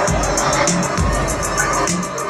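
Loud live electronic dance music over a festival sound system, heard from within the audience: deep bass pulses under a regular run of fast hi-hat ticks.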